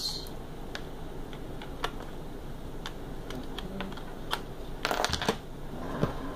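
Scattered light clicks and rustles of charging cables being handled and plugged into the USB ports of a small phone charger, a few clicks bunched together about five seconds in, over steady low room noise.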